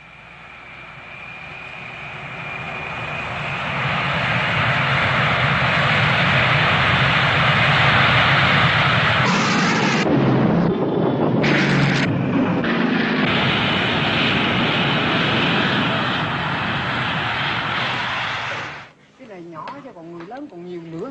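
Jet aircraft engine noise, starting with a high whine and building over the first few seconds into a loud, steady rush as the jet flies past. It cuts off suddenly near the end.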